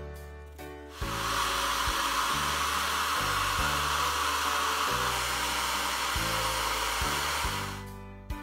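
A hand-held hair dryer switches on about a second in and runs steadily, blowing hot air onto a candle wrapped in tissue and greaseproof paper to melt an ink design into the wax. It stops shortly before the end. Background music plays throughout.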